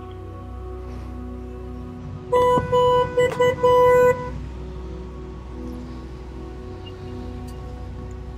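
A vehicle horn sounding three short blasts in quick succession, about two seconds in, over a steady background hum.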